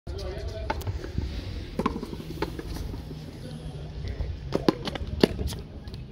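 Sharp, irregular slaps of a frontón handball rally: a bare hand striking the hard ball, and the ball hitting the concrete wall and floor, several cracks a second at the busiest points.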